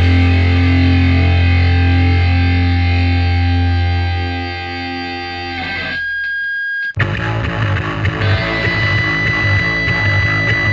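Loud distorted-guitar hardcore punk: a held chord over a droning bass note fades away, a high held tone rings out briefly, and then a new riff with drums kicks in abruptly about seven seconds in.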